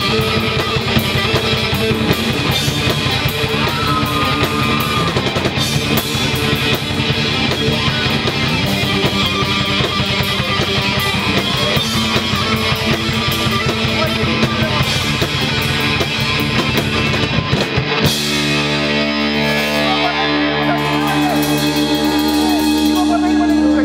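Live rock band playing on electric guitars, bass guitar and drum kit. About eighteen seconds in the drums drop out and the guitars ring on in long held notes.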